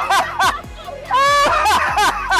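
People laughing hard, a few quick laughs followed about a second in by one high, held squeal of a laugh.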